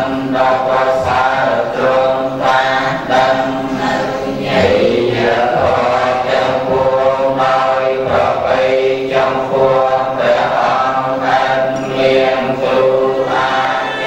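A group of Buddhist laypeople chanting together in unison: many voices in a steady recitation without pause.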